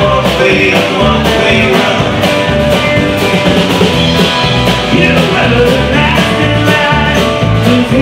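Live country-rock band playing, with strummed acoustic guitars over a steady drum beat, captured by an audience recording.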